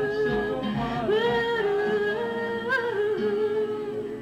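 A woman singing long held notes, gliding between pitches, to her own acoustic guitar accompaniment in a live solo folk performance.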